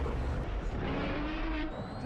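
Movie sound effects from the film being watched: a deep, steady rumble with a low held tone that rises slightly in the middle.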